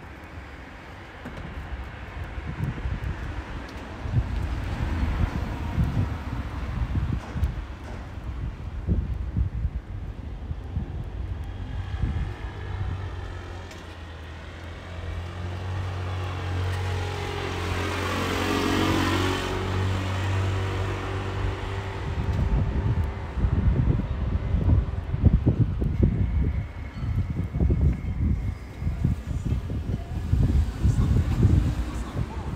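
Road traffic on a city street: a car passes close by, its engine and tyre noise swelling to a loud peak a little past the middle and then fading. Another vehicle comes near at the end, over a low, gusty rumble.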